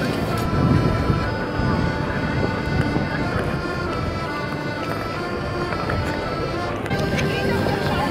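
A Hohner Corona button accordion playing a waltz in held, sustained notes, with the voices of a crowd underneath.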